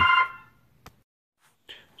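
Mostly near silence (room tone). Just after the start, a man's words and a steady high electronic ringing tone cut off together, one faint click comes just under a second in, and his voice starts again near the end.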